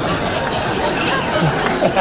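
Studio audience laughing in a steady wash of many voices at once, after a punchline.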